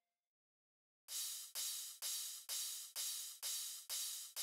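Background electronic music: silent for about the first second, then a steady run of hissing cymbal hits, about two a second, each fading quickly.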